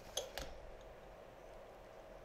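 Two faint clinks of a small spoon against a cup, close together, followed by quiet room tone.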